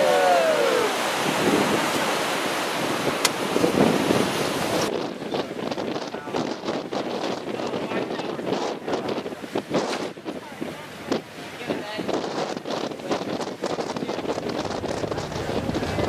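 Surf breaking on a rocky shore, heard from a small boat, with wind on the microphone. About five seconds in the sound cuts abruptly to gusty wind buffeting the microphone over open sea.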